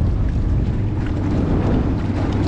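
Jet-drive outboard motor running steadily, under heavy wind buffeting on the microphone.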